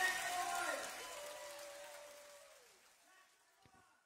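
A faint voice that fades out over about two and a half seconds, then silence.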